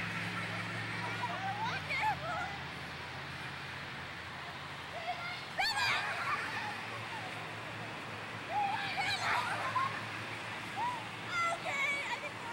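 Young children calling out and squealing in high voices every few seconds as they run about in play, over a steady background hiss.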